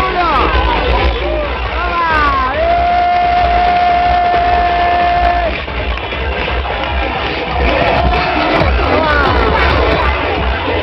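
Loud dance music with a heavy bass in a club, with people shouting and cheering over it. A long held note runs for about three seconds early in the middle.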